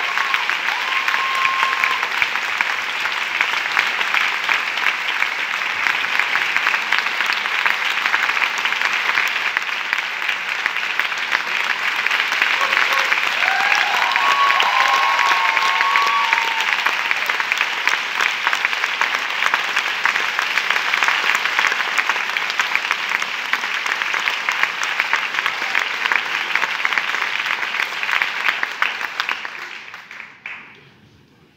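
Large theatre audience applauding: long, dense, steady clapping that dies away right at the end.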